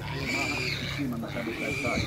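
Several people talking indistinctly in the background, with an animal call over the voices.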